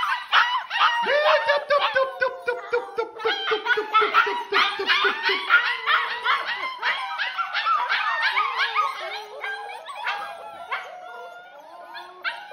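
A litter of German Shepherd puppies yipping and barking all at once: a loud, dense chorus of high-pitched yips. It thins out and gets quieter over the last couple of seconds.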